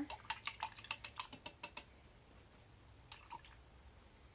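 A quick run of light clicks or taps, about five a second for nearly two seconds, then a short cluster of a few more about three seconds in.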